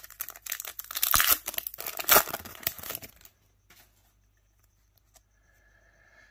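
Shiny trading card pack wrapper being torn open and crinkled, a dense crackle lasting about three seconds.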